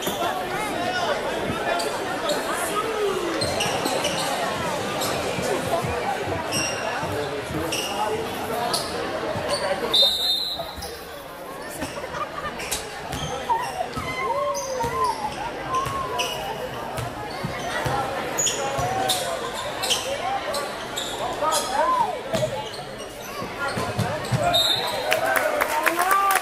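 Basketball dribbling and sneaker squeaks on a hardwood gym floor under steady crowd chatter in a large echoing hall, with a sharp thud about ten seconds in.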